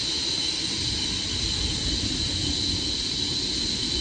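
Zip-line trolley running along the steel cable, a steady rushing whir with a thin high whine, mixed with wind rushing over the phone's microphone.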